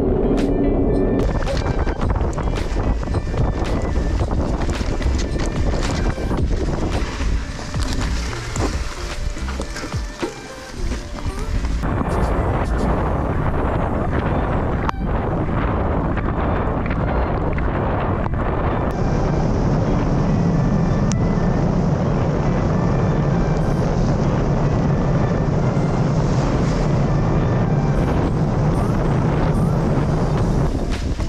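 Steady rushing wind and road noise on a bicycle-mounted action camera riding a wet road, with music underneath.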